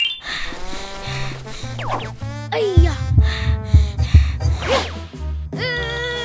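Children's cartoon background music with bass notes, mixed with gliding cartoon sound effects. Near the end comes a held, wavering vocal sound from a character.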